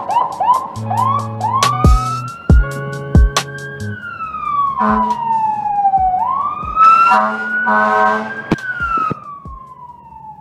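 A siren wailing over background music with a beat. It starts with a run of short rising whoops, then rises and falls slowly, each cycle about five seconds long. The music drops away near the end.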